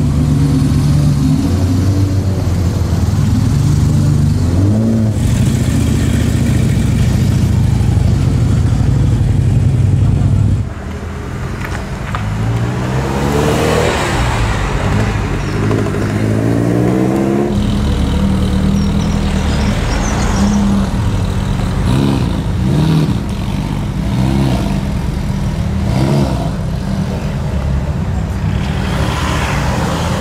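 Sports car engines at low speed. First an Aston Martin's engine runs steadily; then a Ferrari 308 GTS's V8 revs up and down several times as it pulls away. After that an engine idles with short rev blips, and near the end a Ferrari 458 Speciale's V8 revs rising as it moves off.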